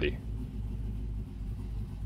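LS3 6.2-litre V8 with a VCM 532 cam idling steadily at about 820 rpm in Park, heard as a low rumble from inside the Land Cruiser's cabin.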